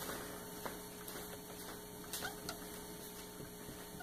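A steady low electrical hum, with a few faint ticks and strokes of a marker being written on a whiteboard.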